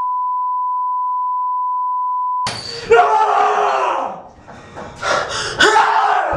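A steady single-pitched bleep tone, about 1 kHz, lasting about two and a half seconds with all other sound cut out under it. It stops abruptly and is followed by loud yelling in the small, boxy space of an elevator.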